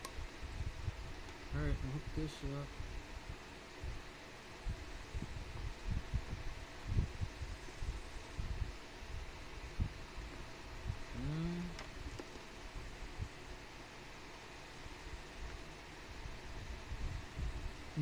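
Handling noise of test leads and alligator clips being fitted onto an automotive horn relay on a wooden desktop: scattered low thumps and rustles over a faint steady hum, with brief muttered sounds about two seconds in and again past the eleven-second mark.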